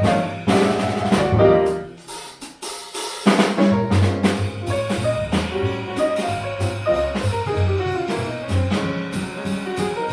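Jazz piano trio playing: grand piano, upright double bass and drum kit. About two seconds in the band drops almost out for a moment, then comes back in together just after three seconds.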